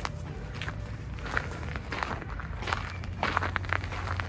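Footsteps of a person walking on a dry dirt footpath, a run of short, irregular steps.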